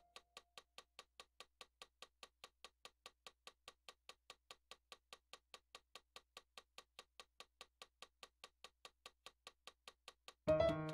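Metronome clicking steadily and faintly, a little over four clicks a second, while the piano is silent; the last piano note dies away at the very start.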